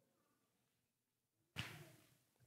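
Near silence in a pause of a man's speech, broken about one and a half seconds in by a single short, sharp intake of breath that fades quickly.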